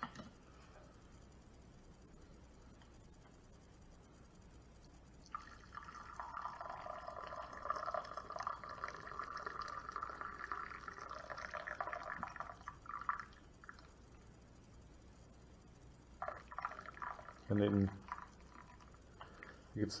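Water pouring from a stainless steel thermal coffee carafe into a ceramic mug. It starts about five seconds in and runs for about eight seconds. This is the last cup of the pot, poured with the carafe tilted steeply.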